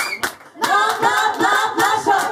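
A group of voices, women leading and audience joining, sings together without instruments over hand clapping. The voices break off briefly just under half a second in, then come back in.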